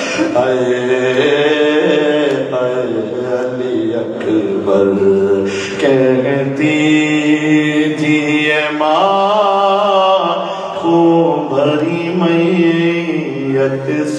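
A man chanting a mournful lament into a microphone, one voice in long held notes that slide up and down in pitch, with short breaths between phrases.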